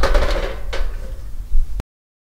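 Knocks and clatter of a portable smokeless charcoal grill's metal bowl and wire grate being handled: a loud knock at the start, a fainter one under a second in, and a sharp click near the end, after which the sound drops out abruptly.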